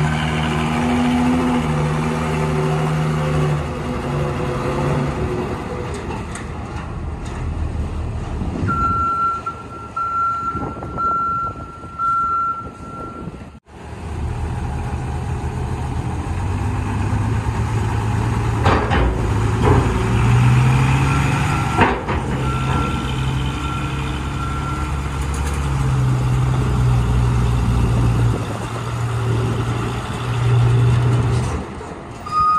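Diesel truck engines running as heavy trucks drive up a steel ramp into a ferry's vehicle deck. A reversing alarm beeps repeatedly for a few seconds in the middle, and again more faintly later, with a few sharp knocks in the second half.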